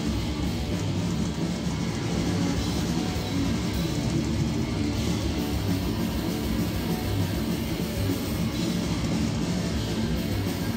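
Black metal band playing live: electric guitars and a drum kit, steady and loud, heard from among the audience.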